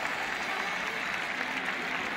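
Large stadium crowd applauding steadily.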